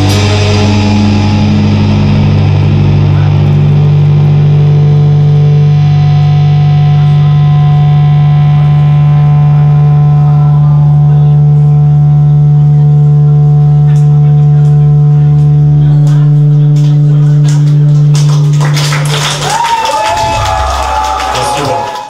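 Distorted electric guitars and bass holding the song's final chord, ringing on as one sustained tone for about nineteen seconds before cutting off. The crowd then shouts and cheers, and the sound fades out at the very end.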